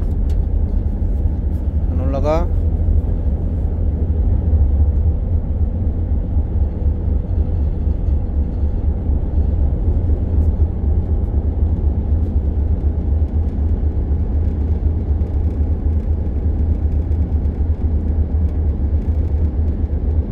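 Steady low rumble of a ship's engine running while the vessel is underway, heard on the open deck, with a faint steady hum above it. A short rising voiced sound comes about two seconds in.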